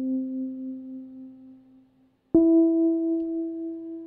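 A software instrument playing back a MIDI clip in Ableton Live, one held note at a time. The first note fades away to silence about two seconds in, before the next, higher note strikes and rings on: the notes dying down between each other, as they do with the hold pedal off.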